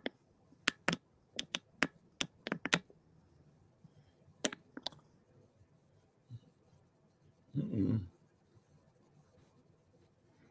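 A run of sharp computer clicks, about nine in quick succession in the first three seconds and two more at about four and a half seconds. Just before eight seconds there is one short, muffled noise.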